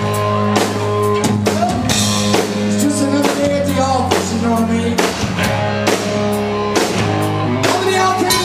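A rock band playing live: a drum kit keeping a steady beat about twice a second under bass and electric guitar, with a man singing over it.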